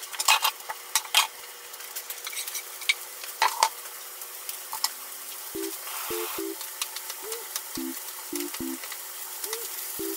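Julienned carrot and daikon peel stir-frying in a frying pan: a steady sizzle with sharp clicks and knocks of a utensil against the pan, busiest in the first few seconds. From about halfway through, a series of short, low pitched blips sounds over it.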